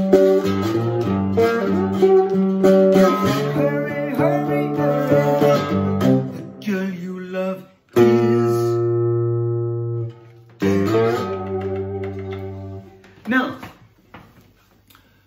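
Cigar box guitar played with a metal slide, accompanying a man singing a blues vocal. Later the voice drops out and two long ringing chords sound, the second cut short about thirteen seconds in, followed by a brief vocal sound as the playing stops.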